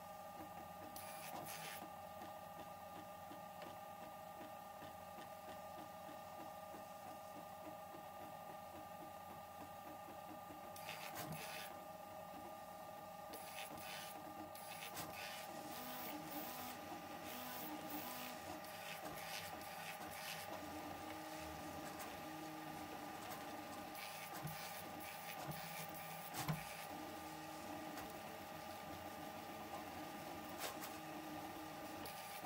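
Pellet-extruder 3D printer built on a Prusa MK4 frame printing a first layer: its stepper motors whine steadily, with lower motor tones shifting in pitch as the print head changes direction. Short ticking bursts come and go, and a single sharp click sounds near the end.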